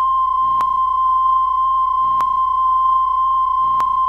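A steady, unbroken high electronic beep tone, a single pure pitch, with faint clicks about every second and a half underneath.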